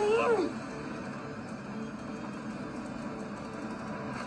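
A short voice sound whose pitch rises and then falls, lasting about half a second at the start. After it there is only a faint, steady background hiss.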